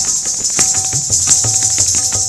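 Kathak dancer's ghungroo ankle bells jingling in a dense, continuous shimmer under rapid footwork, over steady held notes.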